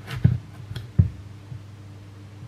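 Kitchen knife working through the hard skin of a small Jack Be Little pumpkin, giving a few dull knocks and taps, the loudest about a quarter second and one second in.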